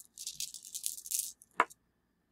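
Rune stones rattling and clicking against one another as a hand stirs through them to draw one. A single sharper click comes about one and a half seconds in.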